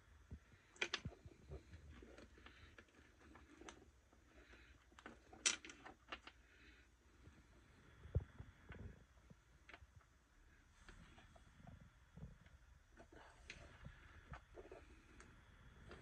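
Faint, scattered small clicks and taps of a soldering iron, wires and a small plastic rocker switch being handled on a wooden tabletop during soldering, over near silence.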